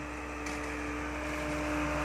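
Hydraulic excavator's diesel engine running steadily as the loaded dredging bucket swings, a continuous low hum with a fixed tone, getting a little louder toward the end.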